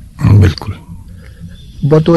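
A man's voice: one short, loud vocal sound about a quarter second in, then a quieter stretch until his speech resumes near the end.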